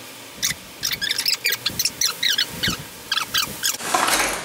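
Irregular run of short, high squeaks and clicks, several a second, from metal parts being handled and fitted at a scooter's rear wheel and disc brake caliper.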